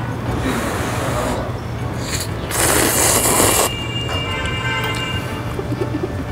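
A loud slurp of cheese ramyun noodles or broth, about a second long, starting two and a half seconds in, over light background music.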